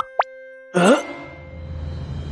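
A cartoon pop sound effect: a quick upward-sliding bloop, followed about half a second later by a short rising vocal noise from a cartoon character, then a low steady hum.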